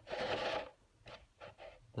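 Hollow painted Lexan RC car body shell handled and turned over on carpet: a short plastic rustle and scrape lasting about half a second, then a few faint light taps.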